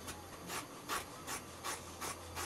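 Scissors snipping through curtain fabric, a steady run of short cuts, between two and three a second.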